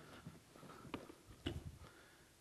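Faint knocks and clicks of guitar cases being set down and handled, with two sharper clicks about a second in and again half a second later.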